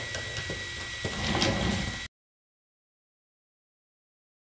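A Byroras BE100 laser engraver cutting cardboard: a steady high whine and a low hum from the running machine, with a louder rush as the laser head moves about a second in. The sound cuts off abruptly about halfway through.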